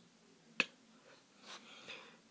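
A single sharp click about half a second in, then two faint clicks near the end as a hand reaches over the plastic keypad of an electronic Deal or No Deal game.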